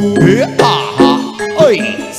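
Javanese gamelan music playing loudly, bronze metallophones ringing held notes, with sliding pitches rising and falling over them.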